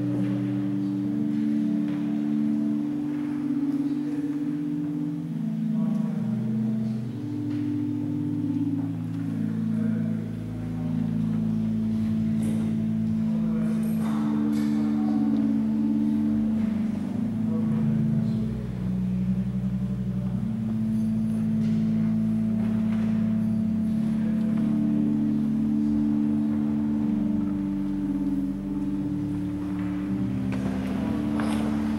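Church organ playing slow, sustained chords, with a deep bass note coming in about a third of the way through.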